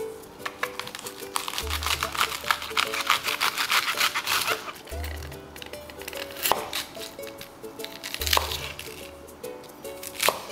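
Chef's knife cutting through raw cabbage on a wooden cutting board: a quick run of crisp crunching cuts in the first half, then a few sharper single cuts with the blade knocking the board, over background music.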